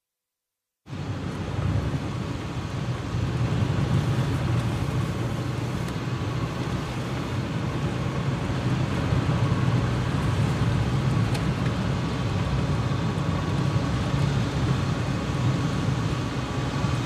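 Silence, then about a second in a car's cabin noise cuts in: the steady low rumble of engine and tyres heard from inside a moving car.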